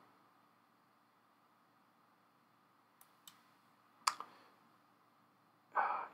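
Computer mouse clicks over quiet room tone: two faint clicks about three seconds in, then a sharper click about a second later.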